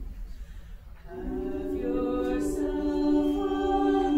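Mixed choir of men and women singing a cappella. After a short lull, the voices enter together about a second in on held notes that grow louder.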